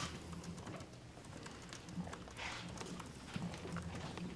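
Quiet room tone in a press room: a steady low hum with scattered faint clicks and a short soft hiss about two and a half seconds in.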